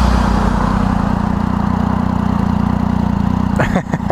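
A 2012 Triumph Daytona 675's three-cylinder engine idling steadily while the bike sits stopped. A voice starts near the end.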